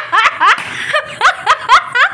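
High-pitched giggling: a run of short laughs, each rising in pitch, with a short break about a second in.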